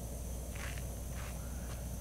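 Quiet outdoor background in a pause between speech: a steady low hum with a faint, even high hiss.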